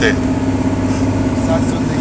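Passenger ferry's engines droning steadily, heard from inside the cabin as the boat runs at speed.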